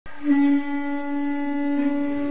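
A horn sounding one long, steady note that swells louder just after it starts.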